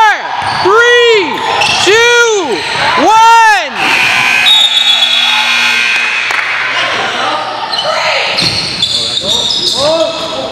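Gym scoreboard buzzer sounding a steady tone for a few seconds at the end of regulation time. Before it and again near the end there are loud pitched sounds that swoop up and down about once a second.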